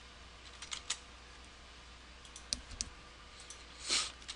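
Computer keyboard keystrokes: a few scattered clicks, the loudest just before the end, as a short command is typed and entered at a terminal.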